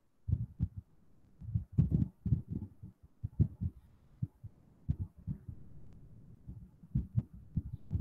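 Irregular soft low thumps with a few sharper clicks, about two to three a second, with a short pause about a second in, heard over a video-call microphone.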